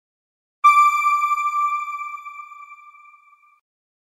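A single chime struck once about half a second in, ringing on one pitch and fading away over about three seconds: a logo sting over the channel's end card.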